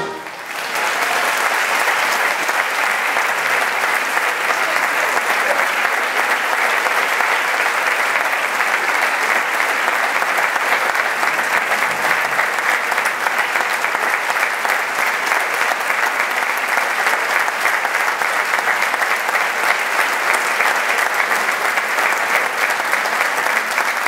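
Audience applauding in a concert hall: dense, steady clapping that swells in within the first second and holds without a break.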